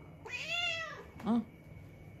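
British shorthair cat giving one meow, its pitch rising then falling, begging for the food held above it.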